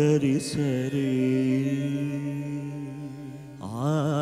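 Carnatic-style devotional singing. A descending sung phrase settles into one long, steady, held low note. Near the end, a louder, higher vocal line with wavering, ornamented pitch begins.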